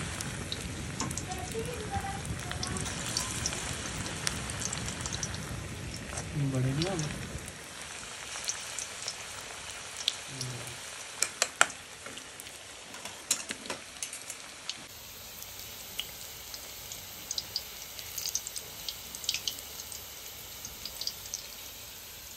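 Pakora batter deep-frying in hot oil in a karahi: a steady sizzle with frequent crackling pops, a few sharp clicks standing out about halfway through.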